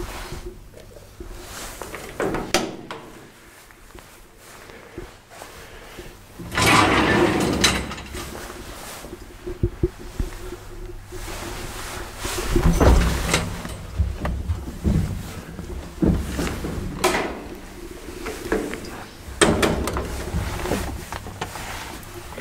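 Old traction elevator car: a steady low hum, broken by several clunks and longer rattling, sliding bursts from the car's doors and gate. The longest and loudest burst comes about a third of the way in.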